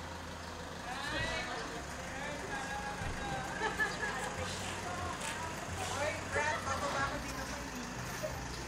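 A motor vehicle engine idling with a steady low hum, while people's voices are heard nearby.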